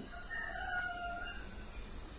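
A faint distant bird call, about a second long and falling slightly in pitch, over low background hiss.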